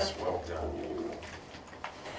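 A person's low, wavering murmur, fading out about a second in, while a wooden Jenga block is eased out of the tower, with a short light click near the end.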